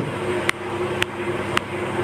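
Steady background hum with a faint steady tone, broken by three short clicks about half a second apart.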